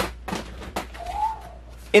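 Handling noise from rummaging in a plastic storage bin of clothing: a sharp click, then a few short rustles and knocks. About a second in comes one short, faint tone that rises and falls.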